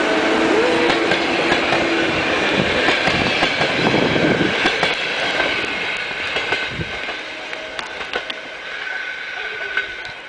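Passenger coaches of a train rolling past at speed, a dense rush of wheels on rail with a thin steady whine, and sharp clicks over the rail joints. The noise falls away steadily as the tail of the train moves off.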